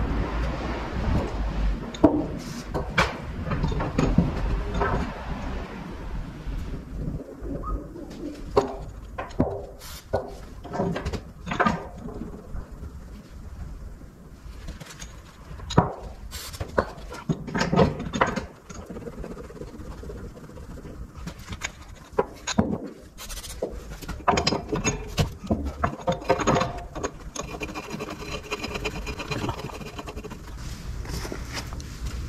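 Irregular metal clanks and knocks as steel locking pins are fitted back into a Goldhofer low-bed trailer's extension while it is reset to normal vehicle width.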